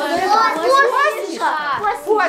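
Several children's voices talking and calling out over one another, with no single clear speaker.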